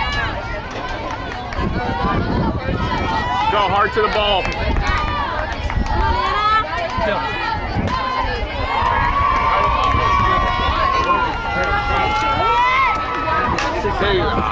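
Several voices shouting and cheering, with long drawn-out chanted calls in the second half, as softball players and spectators cheer on a batter.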